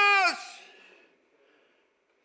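The end of a man's long scream of "Jesus!", held on one high pitch and cutting off about a third of a second in, with its echo in the room dying away over the following half second.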